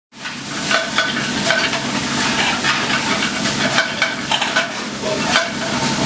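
Greens sizzling in sauté pans on a restaurant range, with frequent short metallic clicks and clinks of the pans and utensils being worked.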